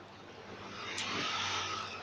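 A road vehicle passing by, its noise swelling from about half a second in and easing off toward the end.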